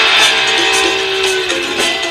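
Rock music with guitar playing, a long note held through the middle.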